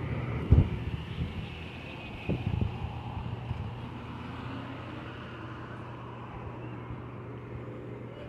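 Light city street traffic: cars driving through an intersection with a steady low engine hum, and two short low thumps on the phone's microphone about half a second and two and a half seconds in.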